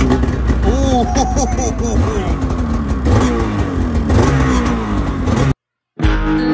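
Polaris 9R two-stroke snowmobile engine firing on the pull start and running loud, its pitch rising and falling as the throttle is blipped. The sound cuts off suddenly near the end.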